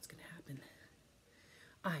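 A woman's soft, near-whispered voice in the first half-second, then a brief quiet pause before she begins reading aloud again near the end.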